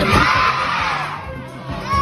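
A crowd of children cheering and shouting over dance music. The cheer is loudest in the first second, then fades away while the music plays on.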